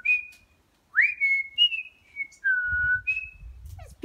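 A run of clear whistled notes, each a single pure pitch. One note swoops up sharply about a second in, and a longer, lower note is held near the end.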